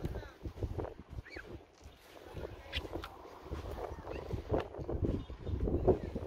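Wind rumbling on a phone microphone, with irregular knocks and scuffs from footsteps on concrete and from handling the phone while walking.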